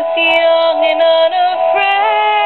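A woman singing a slow ballad solo, moving between sustained notes, over a steady held accompaniment.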